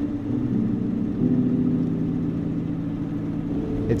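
Chevrolet Suburban's small-block V8 running steadily as the truck cruises, a low drone that gets a little fuller about a second in.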